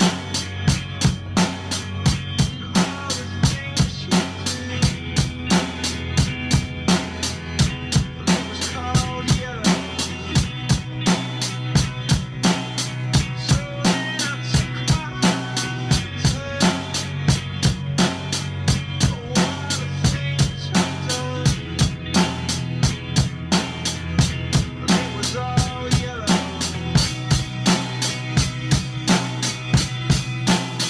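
Acoustic drum kit played to a steady rock-style beat, with bass drum, snare and cymbals, over a recorded song with a sustained bass line as a drum cover.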